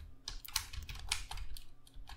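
Typing on a computer keyboard: a run of irregularly spaced keystrokes.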